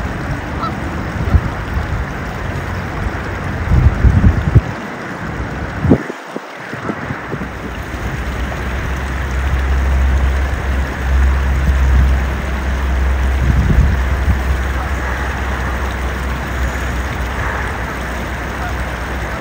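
A flock of Canada geese honking, with a low rumble of wind on the microphone that grows stronger in the middle.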